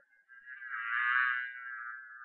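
Buzzing bee sound effect: a steady buzz that swells to its loudest about a second in, then eases off a little.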